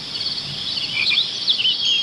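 Crickets chirping in a steady, fast-pulsing trill, with short bird chirps and whistles mixed in about halfway through.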